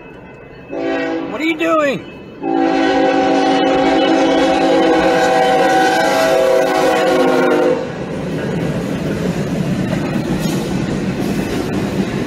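Freight locomotive air horn sounding a short blast about a second in, then a long blast of several steady tones from about 2.5 s that stops near 8 s. After it, the rumble and wheel clatter of the freight train rolling through the crossing.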